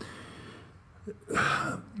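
Quiet room tone, then a short throat clear of about half a second near the end.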